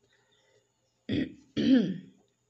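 A woman clearing her throat in two short bursts, the first about a second in and the second half a second later.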